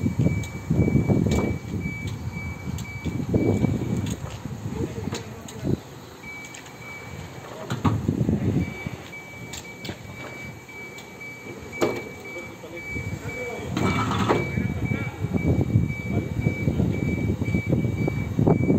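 Electric reach truck (Linde R14) moving with a load, its warning beeper giving a rapid high-pitched beeping that stops briefly twice, over several bursts of low rumbling and a few clicks.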